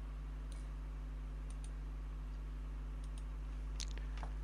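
A few faint, spaced-out computer mouse clicks over a steady low electrical hum.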